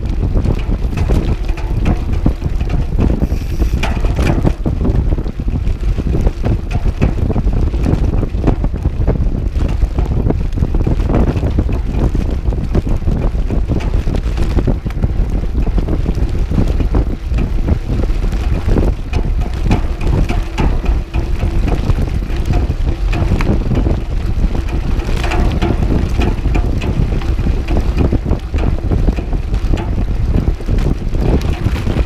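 Wind buffeting a GoPro camera's microphone on a mountain bike ridden at speed, over the steady noise of knobby tyres on a dirt fire road and the bike rattling on the bumps.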